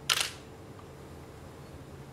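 A single short hiss, about a quarter second long, just after the start, followed by quiet room tone with a low steady hum.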